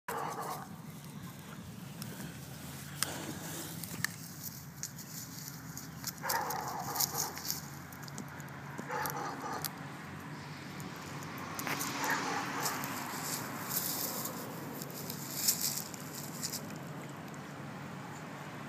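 A German shepherd gnawing on a wooden stick as she rolls in the grass: irregular clicks, cracks and crunching of wood in her teeth, with brief rustles.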